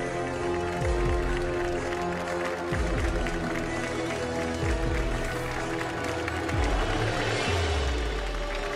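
Television show theme music: sustained chords over deep bass hits that drop in pitch about every two seconds.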